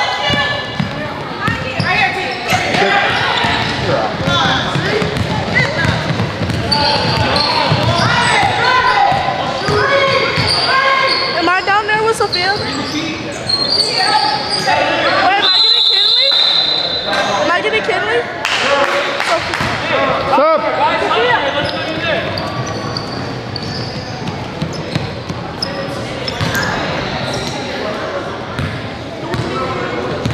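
Youth basketball game sounds: a ball bouncing on a gym floor among many voices of players and spectators. About halfway through, a single high, steady referee's whistle sounds for about a second and a half.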